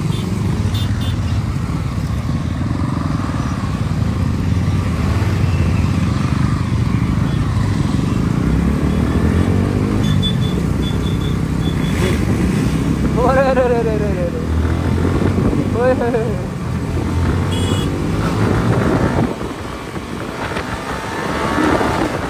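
Yamaha R15 single-cylinder sport bike engine pulling away from a standstill and accelerating, with other motorcycles running close by. Twice in the middle a short swooping tone rises and falls.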